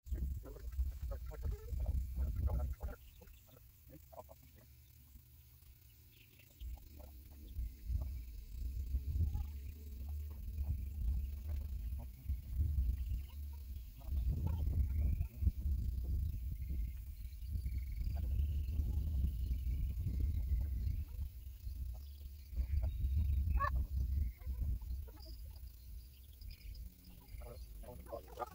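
Gusty wind rumbling on the microphone, dropping away for a few seconds near the start and then coming back, with a few short bird calls over it.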